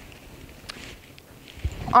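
A pause in a woman's talk: quiet room tone with a few faint clicks and a soft low thump, then she starts speaking again at the very end.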